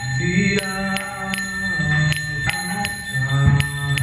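A man singing devotional Sanskrit prayers over a steady drone, with small hand cymbals striking a regular beat about three times a second.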